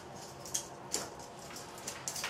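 A few light clicks and taps from small plastic lure parts and tools being handled at a workbench, over a faint steady hum.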